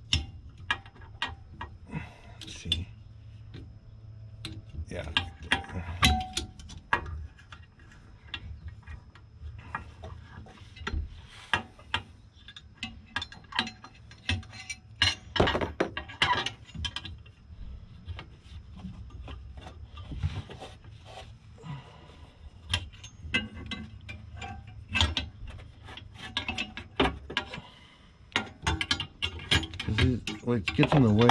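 Irregular metallic clicks, taps and knocks of an aftermarket rear sway bar and its metal bushing clamps being worked into position by hand under the car, over a low steady hum.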